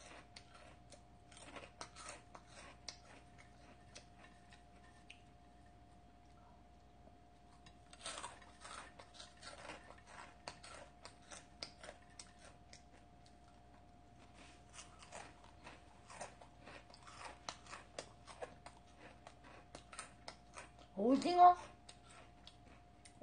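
A person chewing a crisp snack close to the microphone: dry, irregular crunching in runs, pausing twice for a few seconds, over a faint steady hum.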